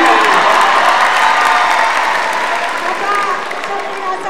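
Audience applause with some cheering, loudest at the start and dying away over a few seconds, with voices faintly under it.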